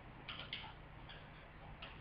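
Quiet room tone with a few soft, irregular clicks: two close together about a third and a half second in, and one more near the end.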